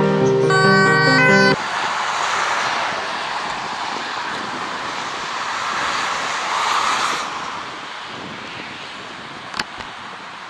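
A short burst of music that cuts off suddenly about one and a half seconds in, then steady motorway traffic noise, swelling as a vehicle passes close around seven seconds in. A single sharp click near the end.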